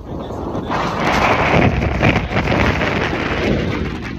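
Strong hurricane wind gusting across the phone's microphone: a loud rushing buffet that rises sharply about a second in and eases near the end.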